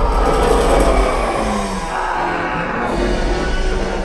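Loud soundtrack of a film montage played through a theatre's speakers: dramatic music over a heavy, deep rumble from the effects track.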